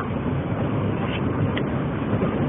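Steady road and engine noise inside a car cruising at highway speed, picked up on a mobile phone's microphone.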